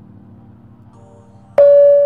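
Intro music: a quiet low drone, then about one and a half seconds in a sudden loud held tone.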